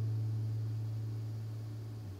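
The final acoustic guitar chord of the song ringing out and slowly fading, a low sustained tone dying away.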